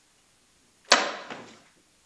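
A single sharp knock about a second in, dying away over about half a second, with a fainter tap just after.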